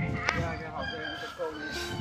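A long pitched animal call over steady background music.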